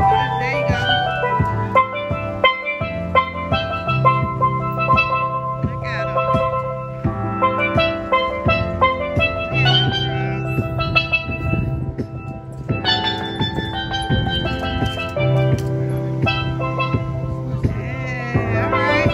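A steel pan played with mallets, a quick melody of bright ringing struck notes, over a low bass line held in long notes underneath.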